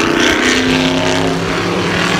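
Historic race cars' engines running hard as the cars come through a corner close by, loud, with several engine notes overlapping at once.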